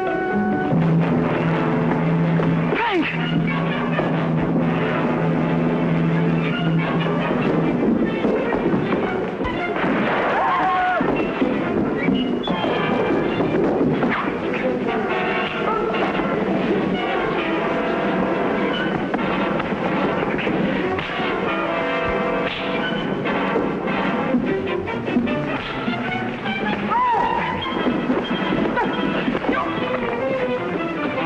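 Dramatic orchestral film score playing continuously, opening over a long held low note for the first several seconds, then busier shifting lines.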